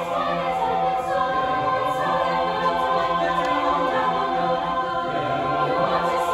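A large mixed choir of female and male voices singing in harmony, holding long sustained chords.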